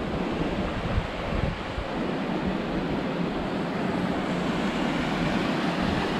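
Mountain stream rushing over rocks, a steady hiss of white water, with wind buffeting the microphone.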